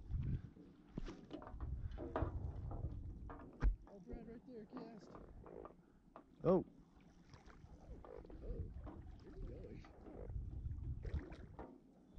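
Indistinct voices over a fluctuating low rumble on the microphone, with a sharp knock a little before four seconds in and a short loud call about six and a half seconds in.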